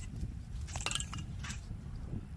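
A few faint tinny clinks, two close together just under a second in and one more about halfway through, as a sling-thrown tennis ball knocks empty cans off a table, over a low rumble.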